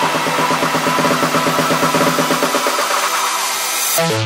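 Tech house music in a breakdown: a dense, buzzy synth texture pulsing rapidly, with no kick drum or bass, easing off slightly near the end.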